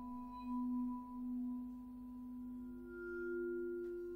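Contemporary percussion music: long sustained metallic ringing tones, the low one swelling and pulsing slowly, with a second, higher tone fading in about three seconds in.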